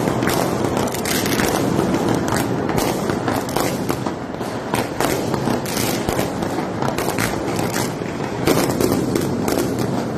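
Fireworks going off in a continuous barrage of rapid bangs and crackles.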